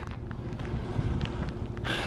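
Steady low rumble of a vehicle running in the background, with wind on the microphone and a few faint ticks.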